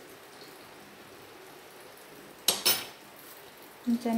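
A metal spoon clinking twice against a dish, two quick sharp strikes with a short ring, about two and a half seconds in, as the chilli powder is tapped off.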